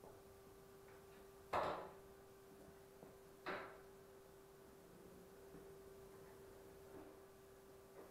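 Two brief knocks about two seconds apart as a tractor snowblower on a wheeled steel dolly is gripped and pushed across a concrete floor; the first knock is the louder. A faint steady hum runs underneath.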